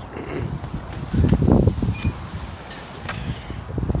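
Wind buffeting the microphone and handling rustle as the handheld camera moves, with a louder muffled rumble about a second and a half in.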